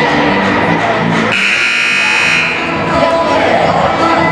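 Music playing in a gymnasium, cut across about a second in by a loud scoreboard buzzer that sounds steadily for just over a second, then stops.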